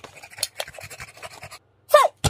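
A man panting in pain through clenched teeth, in quick irregular breaths, with a short cry right at the end.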